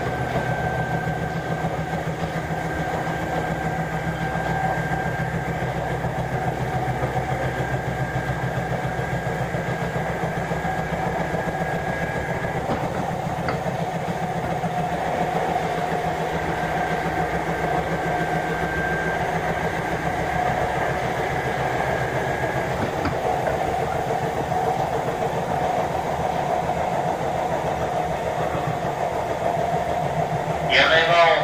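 Steady electrical hum and whine heard inside a car of a Sotetsu 7000 series electric train, holding an even pitch with no acceleration or braking. A high steady tone drops out about twelve seconds in and returns for a few seconds later.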